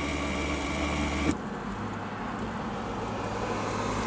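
Steady motor-vehicle hum with no distinct events; the sound changes abruptly about a second in, the low steady drone giving way to a more even, noisy rumble.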